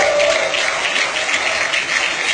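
Crowd applauding loudly, a dense, steady clatter of many hands.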